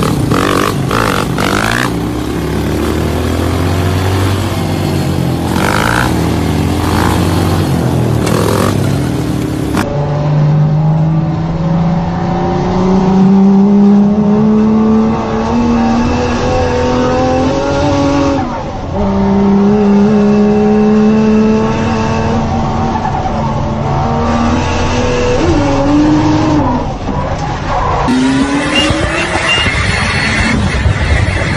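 A dirt bike's engine running as it wheelies. About ten seconds in, a car engine is heard from inside the cabin, revving high and rising in pitch, with a sharp drop at a gear change, as the car drifts with tyre squeal. Near the end a motorcycle's engine takes over.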